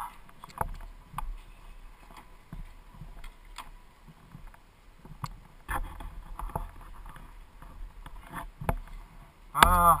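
Scattered light knocks and clicks, with a brief low rumble a little past the middle.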